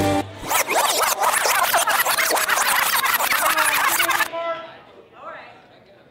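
The slow dance song cuts off abruptly, and a DJ record-scratch and rewind effect runs for about four seconds. It drops away into a quieter stretch with a few brief pitched sounds, marking the switch to an upbeat dance medley.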